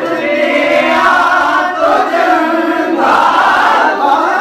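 Unaccompanied male voices singing a naat, with long held notes.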